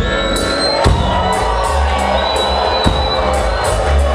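Reggae band playing live on stage in an instrumental passage, with electric bass, drum kit and electric guitar over a steady beat.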